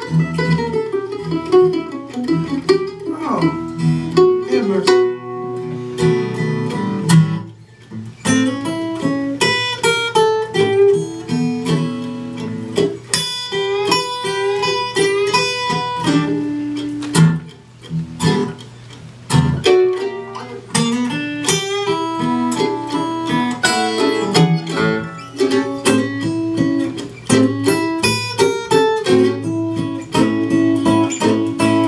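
Acoustic guitar and mandolin playing an instrumental break in a blues song, with plucked notes over guitar accompaniment and brief lulls about seven and eighteen seconds in.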